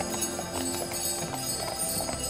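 Friesian horses' hooves clopping on a snow-covered road as horse-drawn sleighs pass, with jingling bells, over background music.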